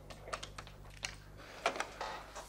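Clicks of buttons being pressed on a plastic desk telephone while a call is put through, about seven sharp clicks at uneven intervals.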